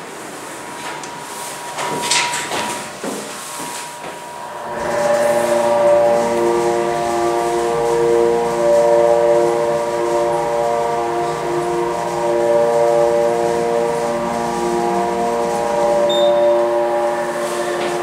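Elevator machinery running as the car travels up one floor: about five seconds in, a steady low hum starts with several held tones over it, running on until the car arrives near the end.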